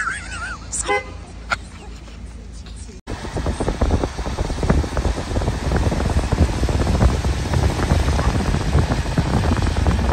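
Road noise from inside a moving car: a steady low rumble with a dense crackle over it, starting abruptly about three seconds in. Before that, a couple of short voice fragments in the first second.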